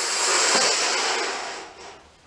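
A person blowing a long breath into a balloon to inflate it by mouth: a steady rush of air that fades out near the end.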